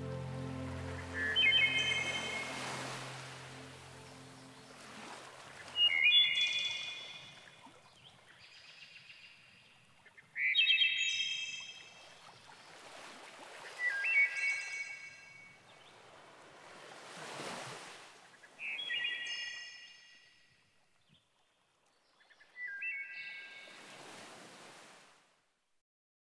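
Background music dies away in the first few seconds. It leaves a recording of waves washing on a shore and a bird calling over them, a short call about every four seconds, six in all.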